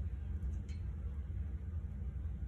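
Steady low background rumble, with a single faint click about two-thirds of a second in.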